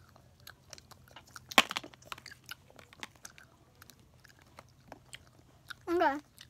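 Small clear plastic candy cups being handled and squeezed close to the microphone: scattered light clicks and crackles, with one sharper, louder click about a second and a half in.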